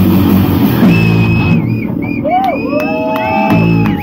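Live hard-rock band (electric guitar, bass and drum kit) playing loudly. About one and a half seconds in, the full sound drops away, leaving sustained high whistling tones with slow glides, a few sharp knocks and some whooping, before a short burst of the band near the end.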